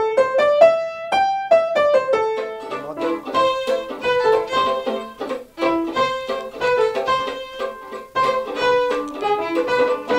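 Upright piano playing a short rising run of single notes on the five-note pentatonic scale. A couple of seconds in, two violins and a piano take over, playing a tune together.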